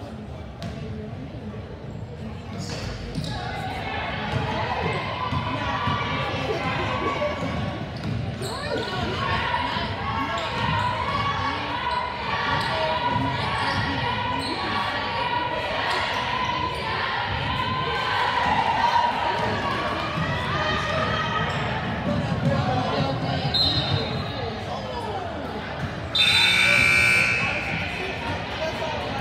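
Basketball game in a gym: the ball bouncing on the hardwood, sneakers squeaking and indistinct voices from players and spectators in the echoing hall. Near the end comes a loud, shrill blast about a second and a half long.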